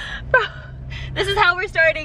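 Young women's excited, wordless vocalising in a car: a gasp about a third of a second in, then a run of high squealing voice sounds, over a steady low hum that begins just after the start.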